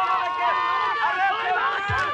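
Several voices calling out over one another at once, with no clear words. A low beat of music starts right at the end.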